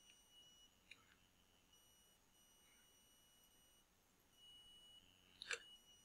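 Near silence: faint room tone with a thin steady high-pitched tone, broken by a faint click about a second in and a quick pair of mouse clicks near the end as the attribute editor is opened.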